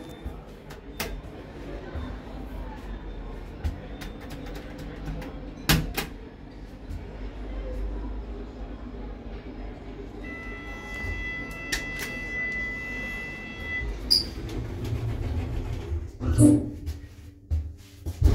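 A 1999 Oakland passenger lift at work: clicks, and a low hum while the car travels. An electronic beep sounds on and off for a few seconds past the middle.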